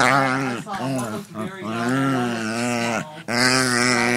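A Shih Tzu making drawn-out, Chewbacca-like groaning vocalizations. There are about four pitched calls separated by short breaks, and the longest, about a second and a half, is in the middle.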